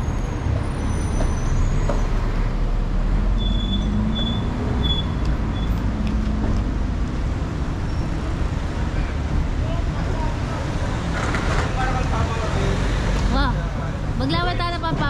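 Steady rumble of city road traffic, cars and buses running past, with one vehicle's engine note rising and falling a few seconds in. Voices of passers-by come in near the end.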